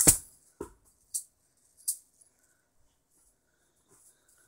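Juggling balls landing after a juggling run: a sharp thud at the start, a softer thud about half a second later, then two light high rattles about a second and two seconds in, and little after that.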